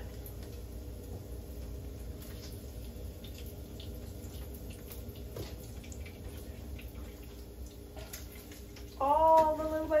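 Bacon grease sizzling steadily in a frying pan, with a few faint clicks of a utensil against it, as the cooked bacon is lifted out and shaken off over the pan.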